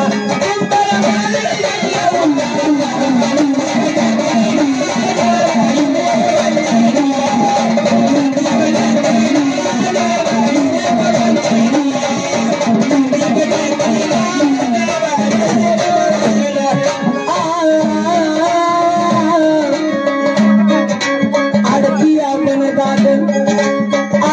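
Live Marathi jagran gondhal folk music in an instrumental passage with no singing: a wavering melody runs over a steady low drone and busy percussion, at an even loudness throughout.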